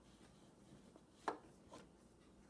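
Two light taps in a quiet room: a sharp one a little over a second in, then a softer one about half a second later.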